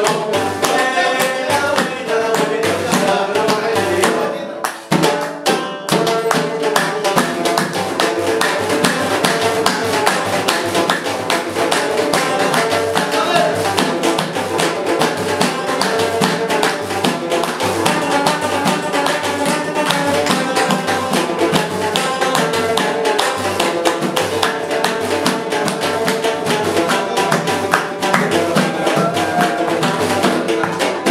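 Live Moroccan folk music: a banjo played over a frame drum with jingles keeping a quick, steady beat, with a short break about four to five seconds in.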